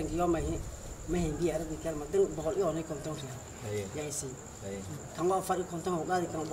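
A man talking, with crickets chirping in a steady, high-pitched trill behind him.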